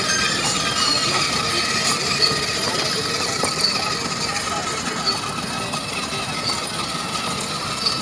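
Children's battery-powered ride-on toy jeep driving, its electric motor and gearbox whirring steadily, with a faint high chirp repeating about every 0.7 s.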